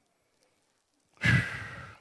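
A man's long, breathy sigh into the microphone about a second in, loud at first and trailing off.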